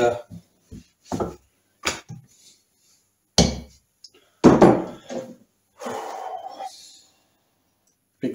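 Workshop hammer strikes on a gearbox casing: two loud sharp blows about three and a half and four and a half seconds in, the second ringing briefly, after a few lighter knocks and clinks of metal tools.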